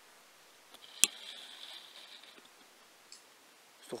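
A single sharp click about a second in, followed by a faint high hiss for about a second, with a couple of weaker ticks over a quiet background.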